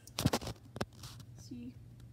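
Soft whispering with a few short, scratchy clicks.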